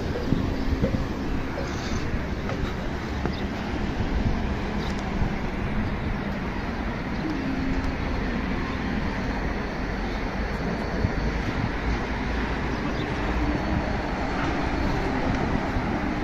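Steady road traffic noise from nearby city streets, with a gusty low rumble of wind on the microphone.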